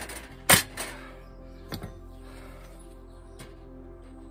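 A stainless steel side plate clanking sharply as it is fitted onto a folding tent stove about half a second in, with a lighter metal click about a second later. Steady background music runs underneath.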